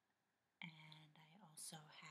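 Quiet speech: a voice talking softly, words indistinct, starting about half a second in.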